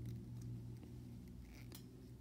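Faint small clicks of a hard plastic toy bow being handled and fitted into an action figure's hand, over a low steady hum.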